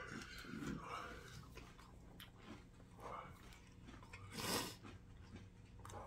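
Faint chewing of crunchy whole-grain cereal flakes, close up, with a louder mouth sound about four and a half seconds in.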